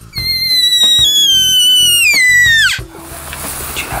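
Hand-held deer call blown in one long, loud whistle that slides slowly down in pitch for over two seconds, then drops away sharply near its end, calling sika deer in the rut.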